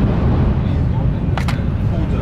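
Steady low rumble of a passenger train cabin while running, with the pressure changes of the ride making ears pop. About one and a half seconds in, two sharp clicks as the clear plastic lid of a takeaway sushi box snaps open.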